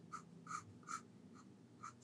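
Pencil drawing lightly on paper: about four short, faint strokes of graphite scratching across the sheet.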